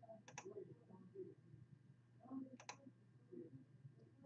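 Faint computer mouse clicks: two sharp double clicks about two seconds apart, each re-running the list randomizer.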